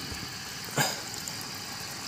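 Aquarium air pump running, bubbling air through a tube into a steel bowl of water as a steady hiss and hum, with one short sharp splash a little before the middle as a hand dips into the water.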